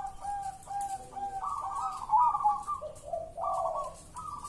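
Caged zebra dove (perkutut) singing its cooing song, a steady run of short repeated coos with a brief break near three seconds.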